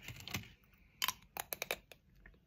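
Close-miked chewing of a Lindt dark chocolate square: a short crunch at the start, then a quick run of sharp, crisp clicks in the second half.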